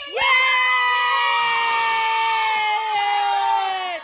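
Women cheering at a party: one long held shout of "yeah!" that slowly falls in pitch and breaks off just before the end.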